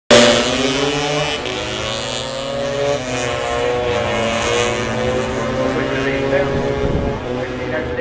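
Two-stroke Lambretta scooter engines at full throttle as two tuned scooters accelerate hard side by side down a drag strip, loudest at the very start.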